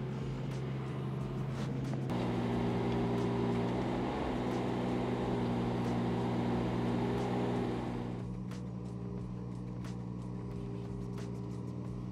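Kubota U17 mini excavator's diesel engine running steadily while the hydraulics work the tilt hitch and bucket. About two seconds in, the engine note strengthens as if under load; it eases back a little around eight seconds, with a few faint clicks near the end.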